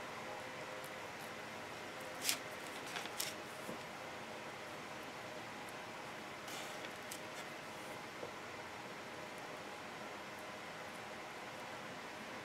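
A few faint, brief clicks and taps of small mosaic tile pieces and a wooden applicator stick being handled, over a steady low room hum.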